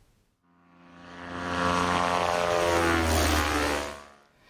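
Propeller airplane flying past: its engine drone fades in, swells, and sweeps in pitch as it passes, then cuts off near the end.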